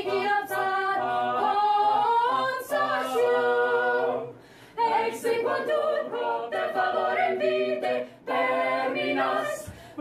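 Mixed choir of men's and women's voices singing a cappella in sustained phrases, with a short break about four seconds in and brief pauses near the end.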